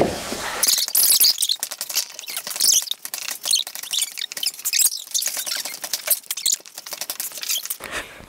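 A dense run of small, sticky, crackling clicks, high in pitch with almost no low end: soft, wet pizza dough being kneaded, squeezed and pulled apart by hand.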